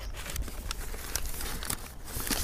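Paper seed packets and brown paper bags rustling and crinkling in irregular little bursts as they are handled and sorted through by hand.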